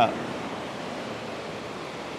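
Steady wash of ocean surf breaking on a sandy beach.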